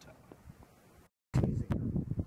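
Faint outdoor background, then, after a brief dropout about a second in, a sudden loud low rumble typical of wind buffeting the microphone.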